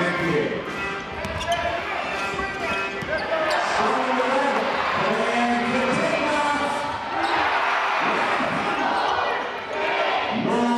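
Basketball game court sound: a ball bouncing on the court in repeated knocks, over a hall full of crowd noise and voices.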